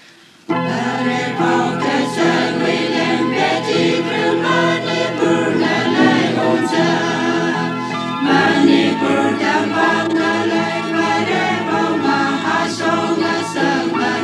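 A choir singing a gospel song, coming in suddenly about half a second in.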